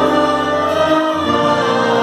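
Wind band of flutes, saxophones and low brass playing sustained chords, with the harmony and bass note changing about a second in.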